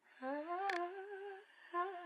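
A woman's voice humming a wavering, wordless melody, the opening of a pop song played as background music. One sharp click falls a little past the first third.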